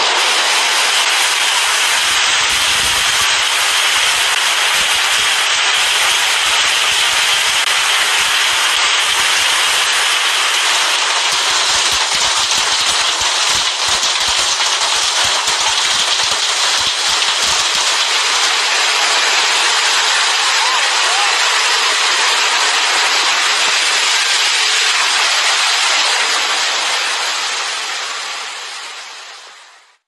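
Heavy hail and rain falling, a loud, steady hiss of hailstones and water, with low thuds of stones striking close by through the first half. It fades out over the last few seconds.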